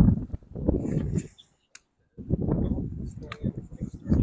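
Low rumbling wind noise on the microphone with indistinct voices. It cuts out completely for under a second midway, and there is a single sharp click about three seconds in.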